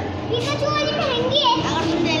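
Children's voices chattering in the background, with no clear single sound standing out.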